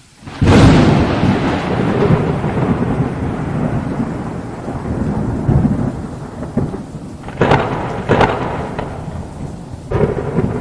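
Thunderstorm: a loud clap of thunder about half a second in rolls into a long rumble over steady rain, with two more sharp cracks of thunder near the end.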